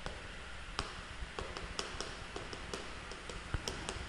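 Faint, scattered taps and clicks over low steady room noise: footsteps and chalk tapping on a blackboard.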